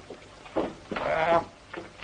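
A man's voice giving a short sound and then a drawn-out, wavering whine of protest, a comic exclamation of embarrassment.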